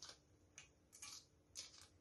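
Near silence with a few faint, light clicks as a metal colander of broccoli florets is tipped over a glass salad bowl.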